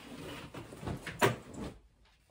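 Clothes rustling and sliding as a pile is pulled down off a wooden wardrobe shelf, with a couple of louder bumps a little after a second in.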